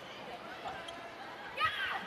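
Faint arena background during a volleyball rally, with a few light ball contacts. A commentator's voice comes in near the end.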